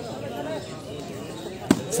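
Faint crowd voices, then one sharp smack of a volleyball being hit near the end.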